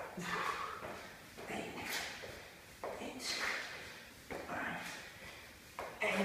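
A man breathing hard through a bodyweight exercise, with heavy breathy exhales. Soft knocks of his feet on a rubber floor mat come about every second and a half as he alternates legs in spiderman climbs from a plank.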